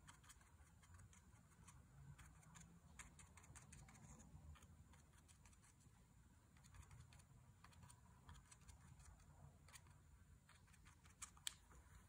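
Near silence with faint, irregular light ticks: a bristle fan brush being dabbed on watercolour paper.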